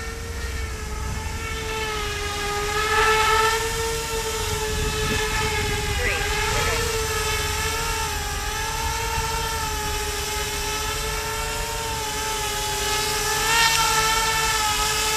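Z-2 RC bicopter's two electric motors and propellers whining steadily in flight, the pitch wavering slightly as it holds against gusts. A low wind rumble sits underneath.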